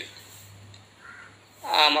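A pause in a man's narration: a low steady hum, with one faint short call about a second in, before the voice starts again near the end.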